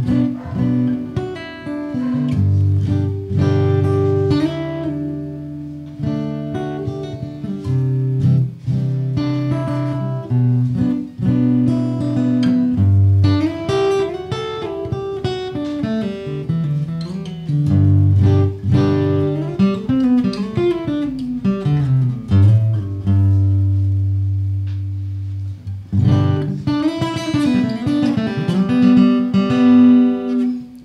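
Hofma HMF250 steel-string acoustic-electric guitar played with a pick through its piezo pickup, into a valve amplifier set clean and a miked 4x12 cabinet. It plays a continuous picked passage of single-note lines and chords, with a run of falling notes about two-thirds of the way through.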